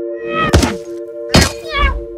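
Film soundtrack music holding a sustained chord, cut by two heavy thuds about a second apart, followed by a brief wavering tone near the end.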